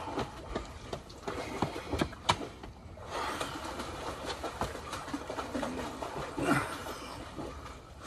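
Scattered knocks and scuffs from a person doing burpees, hands and push-up handles meeting a concrete patio, over a steady background hiss.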